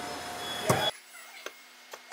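Wire strippers and short copper pigtail wires being handled: a faint rustle and a sharp click in the first second, then much quieter with a couple of small ticks.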